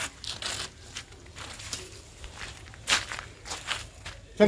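Irregular rustling and crackling with scattered sharp clicks, like handling or stepping on dry ground and litter; the loudest click comes about three seconds in.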